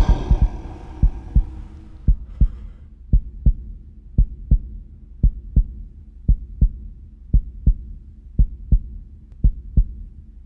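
Heartbeat sound effect: paired low thumps, about one beat a second, keeping a steady pace. At the start, the tail of a man's loud roar fades away over the first second or two.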